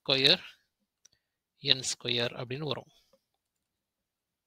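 Brief speech: a man's voice says two short phrases, one at the very start and one about two seconds in, with dead silence around them.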